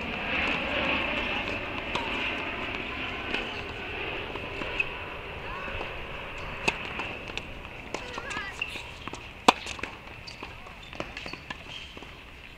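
Tennis ball struck with a racket on an outdoor hard court: a serve hit about seven seconds in, then a sharper, louder hit about two and a half seconds later, with lighter knocks earlier. A steady background hiss runs underneath.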